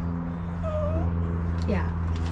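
A dog gives one short whine a little over half a second in, over a steady low hum.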